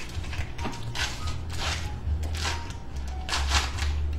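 Foil wrapper of a block of cream cheese crinkling and tearing as it is pulled open, in several short bursts, over background music.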